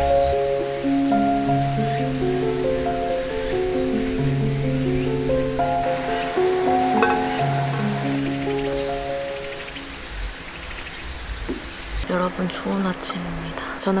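Background music of slow held melodic notes, fading out about ten seconds in, over a steady high chorus of insects that carries on after the music stops. Near the end a woman's voice starts speaking.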